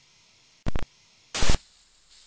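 Two short bursts of harsh static over a faint hiss, a little over half a second in and about a second and a half in. The second burst is the louder.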